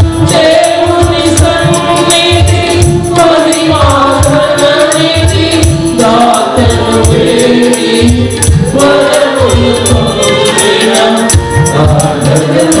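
A mixed choir sings a Telugu Christian worship song in unison, with a tambourine shaken in a steady rhythm and a low beat pulsing underneath.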